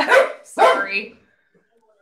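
Dog barking twice, close to a microphone.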